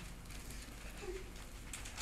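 Quiet room tone in a small room: a steady low hum with a faint brief sound about a second in.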